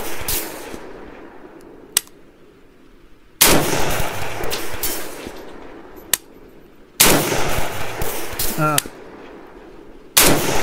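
AK-pattern rifle in 7.62x39 (Palmetto State Armory PSAK-47) firing slow, deliberate single shots: two sharp shots about three and a half seconds apart, each followed by a long echo dying away, with the echo of an earlier shot fading at the start. A faint sharp tick comes between the shots, twice.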